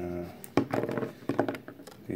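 Small, firm chili pods being scooped up and handled in both hands, clicking and knocking against each other in a quick, irregular run of small knocks.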